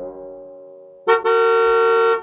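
Cartoon bus horn giving one steady honk of about a second, starting about halfway in, after the last notes of a music jingle have died away.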